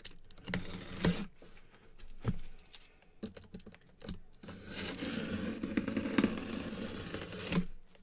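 Cardboard box being cut and pried open by gloved hands: scattered clicks and knocks, then about three seconds of continuous scraping and rubbing of cardboard.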